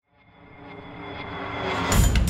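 Intro sound effect: a whooshing rise that swells steadily from silence over about two seconds, building up to the start of the intro music.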